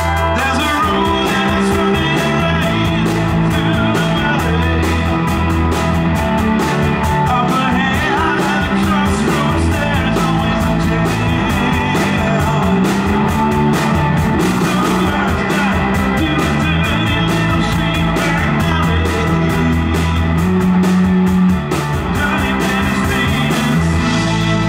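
Live blues-rock band playing at full volume: electric guitars, electric bass and drum kit together, with steady sustained bass notes under the guitars.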